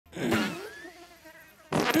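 Two cartoon fart sound effects: a wobbling one at the very start, then a louder one with falling pitch near the end.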